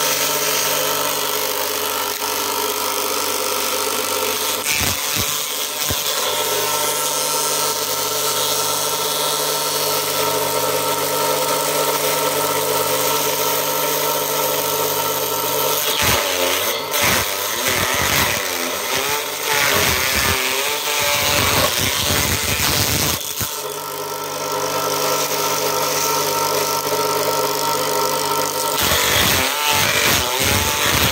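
Homemade corn-stalk shredder running: an electric motor spins a scythe-blade cutter inside a sheet-steel housing with a steady hum. From about halfway through for several seconds, and again near the end, dry corn stalks fed into it are chopped with a rough, irregular shredding and rattling.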